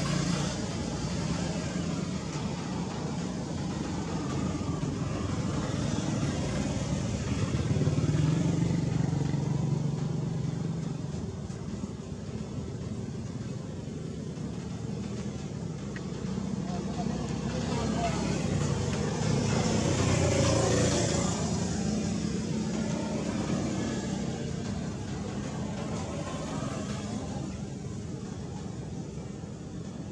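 Background road traffic, a steady low rumble that swells louder twice, about eight and twenty seconds in, as vehicles pass, with indistinct voices in the background.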